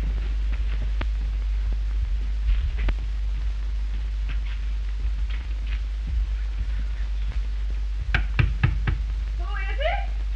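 Knuckles rapping on a wooden door, about five quick knocks near the end, over the steady low hum of an early sound-film soundtrack.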